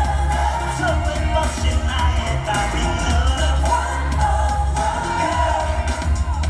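Live K-pop music with a male voice singing over a loud, boomy bass, heard from the audience at a concert.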